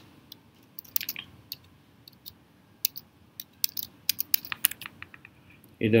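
Typing on a computer keyboard: irregular key clicks in short runs.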